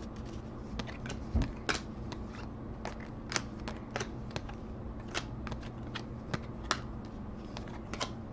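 2013 Topps Chrome football cards being flipped through by hand one at a time: light, irregular clicks and slaps of card against card, about one or two a second, over a low steady hum.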